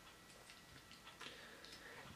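Near silence, with a few faint clicks of a small plastic Transformers figure's parts being moved by hand.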